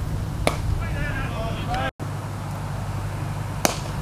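Wind buffeting the microphone in a steady low rumble, with a sharp knock about half a second in as the cricket ball meets the bat, and another knock near the end. Faint voices call out before the sound cuts out for an instant in the middle.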